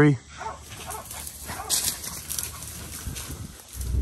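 Low animal noises from a caught feral boar and its catch dogs, mixed with rustling in the brush, with a brief hissing burst about halfway through.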